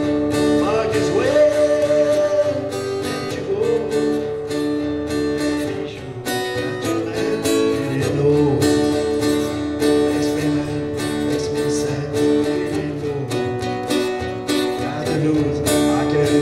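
Acoustic guitar strummed in a steady country-rock rhythm.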